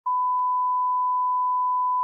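Broadcast line-up test tone: a single steady 1 kHz reference tone sent with colour bars, cutting in suddenly and holding at one pitch and level, with a faint click just after it starts.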